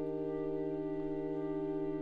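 Flute, clarinet and bassoon holding a sustained chord of several steady notes in a live chamber performance, one of the middle notes pulsing rapidly.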